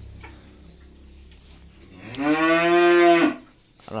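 A calf mooing once, a single drawn-out call of just over a second beginning about two seconds in, rising at the onset and dropping off at the end.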